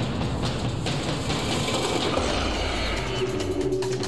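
Cars driving, with engine and road noise, mixed with background music. Steady musical tones come in about three seconds in.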